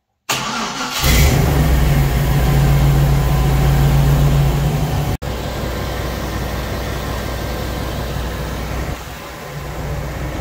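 Jeep CJ-7's engine cranking briefly, catching about a second in and settling into a steady idle, on its first fire-up with a new aluminum radiator and mechanical clutch fan. The sound cuts out for a moment about five seconds in.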